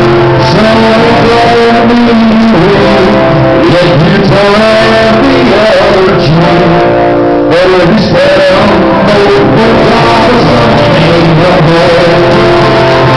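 Acoustic guitar strummed in chords with a man singing along, live and very loud.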